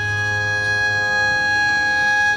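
Carnatic violin holding one long, steady note over the tanpura drone.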